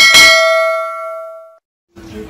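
A single bell-like ding, the notification-bell chime of a subscribe-button animation, struck at once and ringing out over about a second and a half as it fades.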